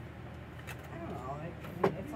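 A toddler's wordless babbling over a steady low hum, with a single sharp knock near the end.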